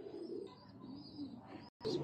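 Faint, low cooing of domestic pigeons, with a brief dropout near the end.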